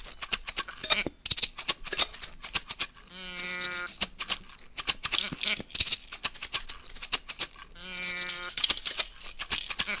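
Several shakers played in a quick rhythm, overlaid with a cow 'moo' can (tilt moo box) lowing twice, at about three and eight seconds in, each low moo lasting under a second.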